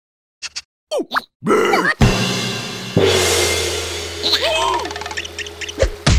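Cartoon soundtrack: after a brief silence come short squeaky character vocalisations, then a sustained musical swell with a low hum that fades over about three seconds, with a few more squeaky vocal glides near the end.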